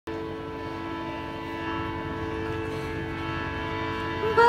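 Harmonium sounding a steady held chord, its reeds droning without change of pitch.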